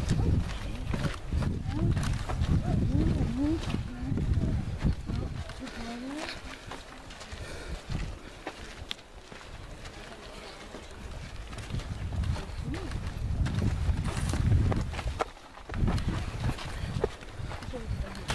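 A group walking on a dirt trail: scattered voices talking and low rumbling from movement on the microphone, louder at the start and again near the end.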